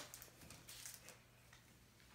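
Near silence: room tone with a faint low hum and a few faint light ticks and rustles in the first second.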